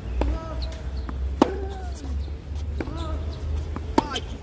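Tennis ball being struck by racquets and bouncing on a hard court during a baseline rally: a sharp pop roughly every second and a bit, the loudest one near the end as the near player hits a forehand.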